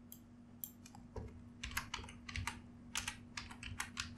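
Typing on a computer keyboard: a quiet, irregular run of keystroke clicks starting about a second in, over a faint steady hum.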